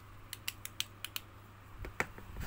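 A quick run of about six small, sharp plastic clicks from hands handling battery headlamps, then a soft knock near the end as one headlamp is set down on the table.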